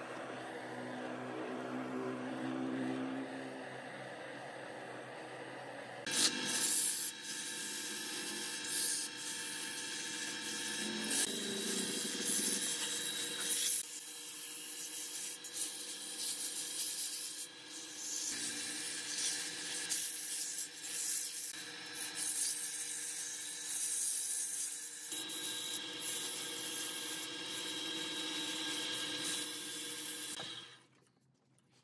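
Sandpaper held by hand against a wooden baluster spinning on a wood lathe: a rough rubbing hiss that starts loud about six seconds in and rises and falls as the hand moves, over the steady hum of the lathe motor.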